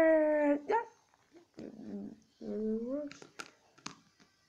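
A child's voice making dog-like whining noises. One long wavering whine stops about half a second in, then short whimpers and yelps follow, and two sharp clicks come near the end.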